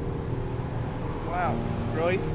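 Street traffic with a vehicle going by, under soft background piano music. A short vocal sound comes about one and a half seconds in.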